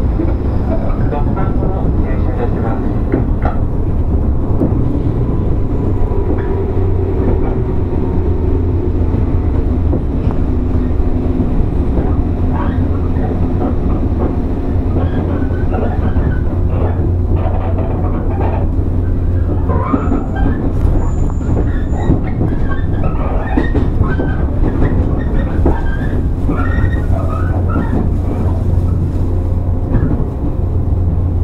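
JR 115 series 1000 electric train standing at the platform before departure: a steady low hum from its onboard equipment, with scattered clicks and knocks in the second half.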